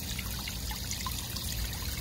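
Thin jets of water from a small pond pump trickling and splashing steadily into a small bowl pond.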